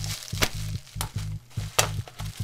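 Bubble-wrap mailer being cut and pulled open: four sharp crackles of the plastic wrap, the loudest about half a second in and near the end, over background music with a steady low beat.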